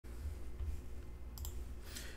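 Low steady hum with two quick clicks about a second and a half in, from a computer mouse.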